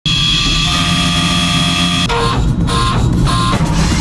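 A Swiss-type CNC lathe (Tornos GT32) cutting a brass part without coolant: a dense, steady machining noise with high steady tones, mixed with music. About two seconds in the sound changes to three short pulses about half a second apart.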